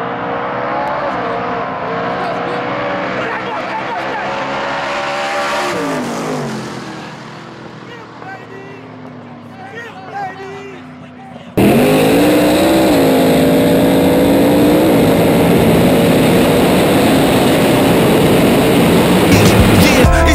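Drag-racing street cars at full throttle, engine notes climbing for about six seconds, then dropping in pitch and fading as they pull away down the street. About twelve seconds in, an abrupt cut brings a much louder, steady sound that lasts to the end.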